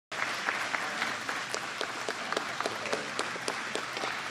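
Audience applauding: many people clapping steadily, a dense patter of hand claps.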